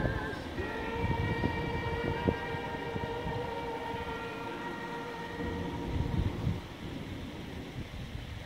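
A single steady, horn-like pitched tone held for about five seconds, starting just under a second in and then fading out, over a low wind rumble on the microphone.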